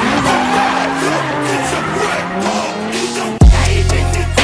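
BMW E36 coupe drifting, its engine note rising and falling as the tyres squeal and skid across the tarmac. Near the end a loud, bass-heavy music beat cuts in over it.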